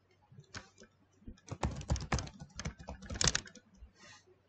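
Computer keyboard typing: a quick, irregular run of keystrokes, bunched in the middle and again near the end, as a password is entered to sign in to Windows.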